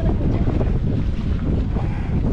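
Wind buffeting the microphone: a steady, loud low rumble with no clear pattern.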